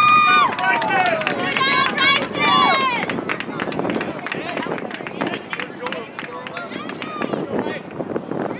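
Shouting on a soccer field: a long, high-pitched yell that falls away about half a second in, more shouts around two to three seconds in, then fainter scattered calls and sharp taps.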